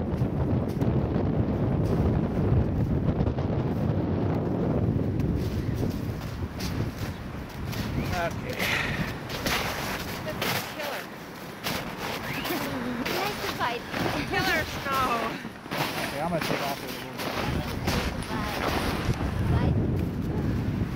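Wind rumbling on the microphone, heaviest in the first few seconds, with people talking at a distance from about the middle on.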